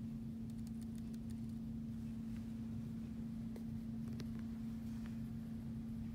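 A steady low hum holding one pitch, with a faint rumble beneath it and a few faint clicks a little after the middle.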